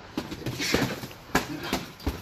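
Boxing gloves smacking against gloves and padded headgear in close-range sparring: four or five sharp hits spread unevenly through the two seconds, with a short breathy hiss near the middle.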